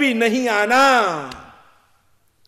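A man's voice speaking a drawn-out phrase that fades out about a second and a half in.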